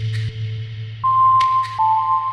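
Generative pentatonic ambient music with electronic tones: a low sustained tone under a soft hiss, a high pure tone entering about halfway, and a second slightly lower one just before the end. Pairs of short clicks recur about every second and a half.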